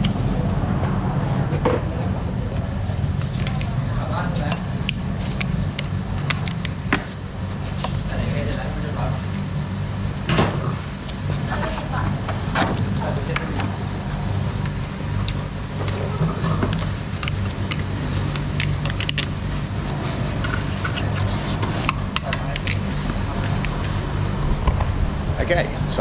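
Stiff scrubbing brush worked over a wet scooter front wheel and tyre, in irregular short scratchy strokes, over a steady low hum.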